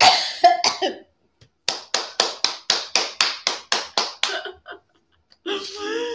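A woman laughing helplessly. A few breathy laughs come first, then a run of about a dozen short, sharp, breathless bursts at about four a second, and a voiced laugh near the end.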